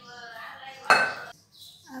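A steel spoon scraping the thick coconut barfi mixture out of a pan, with one sharp, ringing clank of metal on steel cookware about a second in.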